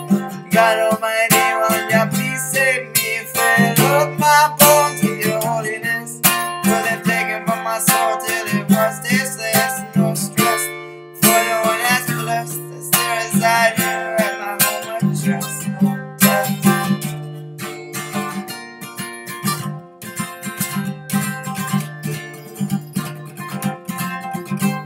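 Acoustic guitar played alone as an instrumental passage of a song, strummed and picked chords in a steady rhythm.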